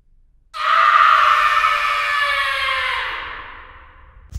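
One long scream used as a horror sound effect: it bursts in about half a second in, then slowly drops in pitch and fades out over about three seconds.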